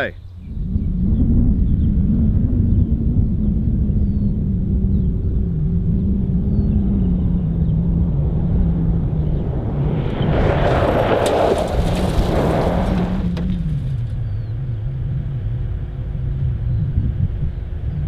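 Suzuki Grand Vitara running toward the microphone on a gravel road, heard as a low rumble with a wavering engine note. About ten seconds in comes a harsh crunching hiss of locked tyres skidding over gravel for about three seconds, as the car panic-brakes with its ABS switched off.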